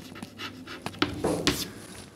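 Chalk writing on a chalkboard: a string of short taps and scrapes as a word is finished and underlined.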